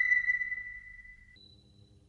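A single high electronic ping from a logo intro, ringing and fading away over about a second and a half, followed by a faint low hum.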